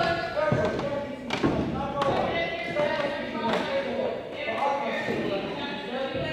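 Indistinct voices echoing in a large gymnasium, with a few separate thuds on the hardwood floor.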